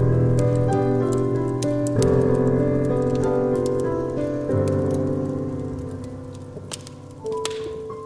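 Piano chords struck about every two and a half seconds, each left ringing and fading away, with a single note near the end, over the irregular crackle and pops of a wood fire.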